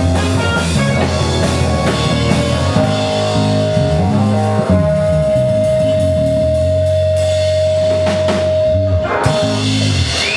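Live rock band of electric guitar, bass guitar, drums and keyboard playing the end of a song. One high note is held steady for about five seconds, and the band stops just before the end.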